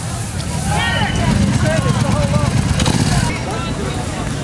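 Motorcycle engine running nearby, a steady low uneven rumble, with voices talking over it.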